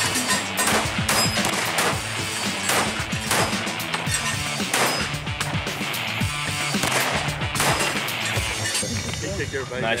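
A long string of gunshots from a competition shooting course, roughly two shots a second, over background music.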